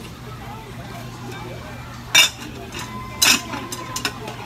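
Two sharp metallic clanks about a second apart, like pots or other metal objects knocked together, the second leaving a brief ringing tone.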